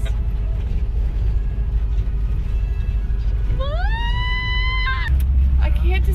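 Cabin noise of a moving VW Vanagon Westfalia camper van: a steady low engine and road rumble that grows louder about five seconds in. Shortly before that, a high voice gives one long call that rises and then holds for over a second.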